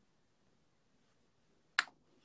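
A single sharp click near the end, over a quiet room.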